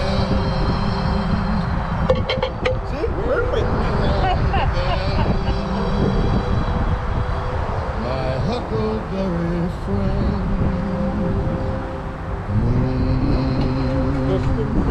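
Indistinct voices of people talking over a steady low rumble, with a few sharp clicks about two seconds in.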